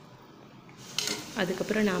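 A single metal clink of kitchen utensils against an aluminium pressure cooker about a second in, after a quiet start.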